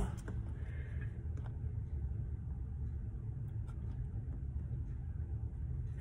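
A steady low hum with faint scrapes and clicks of a metal fork stirring a thick cornstarch-and-water mix in a plastic cup.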